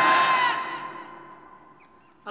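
A man's long drawn-out cry through a public-address system, rising in pitch and then held, fading out over about a second and a half.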